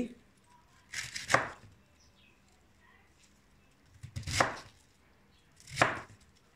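Kitchen knife cutting through a head of white cabbage onto a plastic cutting board: three separate cuts, about a second in, about four seconds in and near the end.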